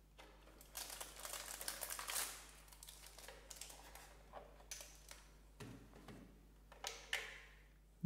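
Hands handling a molded white plastic packaging tray and the parts in it: faint rustling and crinkling with many light plastic clicks and taps. The handling is busiest in the first few seconds, then comes in scattered short bursts.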